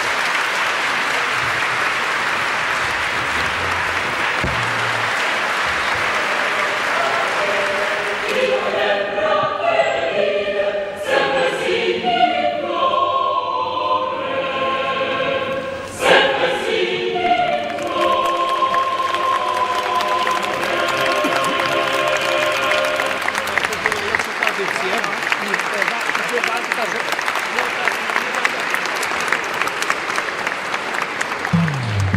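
An audience applauding. From about eight seconds in, a choir sings over the continuing applause, and near the end the singing gives way to applause alone.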